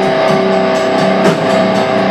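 Live heavy metal: distorted electric guitars hold a droning chord over drums, with no bass guitar, and a loud drum hit a little past halfway.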